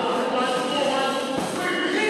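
Indistinct voices echoing in a large gym hall, with the scuffing footwork and gloved-punch thuds of two children sparring in a boxing ring; one thud stands out about a second and a half in.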